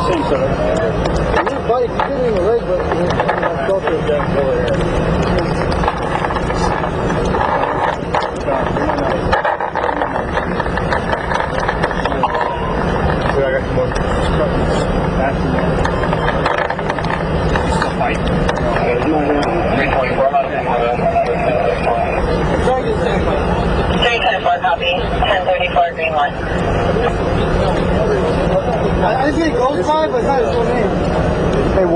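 Indistinct, muffled voices of several people talking over one another, too unclear to make out words, over a steady low rumble.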